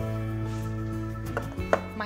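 Soft background music with steady held notes; near the end two sharp knocks as a metal muffin tin is set down on the worktop, the second louder.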